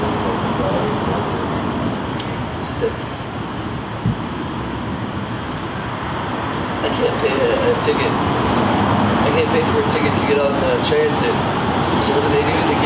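Steady city street traffic noise, with indistinct voices talking from a little past the middle.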